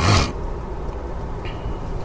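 Steady low rumble of a car on the move, heard from inside the cabin, with a short breathy burst of noise at the very start.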